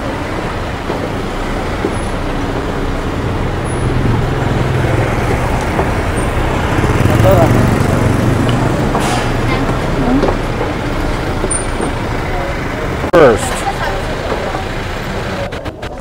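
Road traffic noise: a steady rumble in which a passing vehicle's engine builds to its loudest about halfway through and then fades, with a few brief voices.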